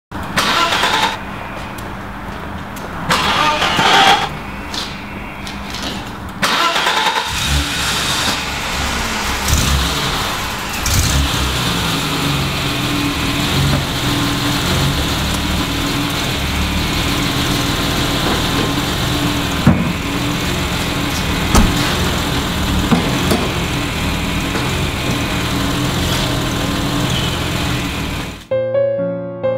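An old BMW E30 saloon's engine cranked in three short tries, catching about seven seconds in and then running on steadily, its note wavering slightly.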